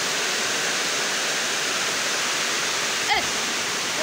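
A steady, even hiss that holds the same level throughout, with a brief gliding sound about three seconds in.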